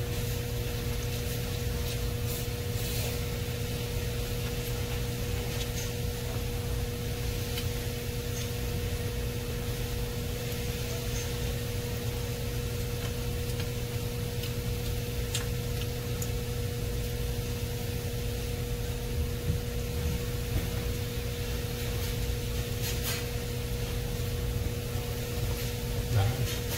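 Steady low hum with an even hiss underneath, the background noise of a running appliance in a small room, with a few faint clicks from eating noodles with chopsticks.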